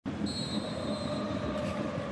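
Steady stadium crowd noise at a football match, with a faint high referee's whistle during the first second as play kicks off.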